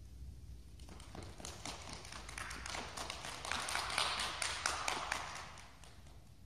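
A small group of children clapping: scattered claps start about a second in, build to a brisk round of applause, then die away near the end.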